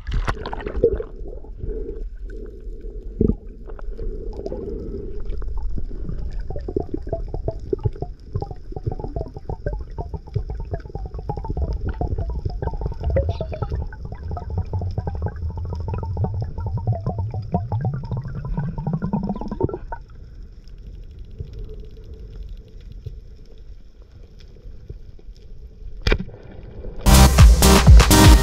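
Water splashing as the diver goes under, then muffled underwater noise through the camera's housing, thick with crackling clicks. Near the end a low hum rises in pitch and cuts off suddenly, leaving a quieter underwater hush.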